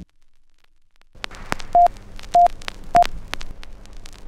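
About a second of silence, then old-film soundtrack crackle with scattered clicks and pops, and three short high beeps about half a second apart.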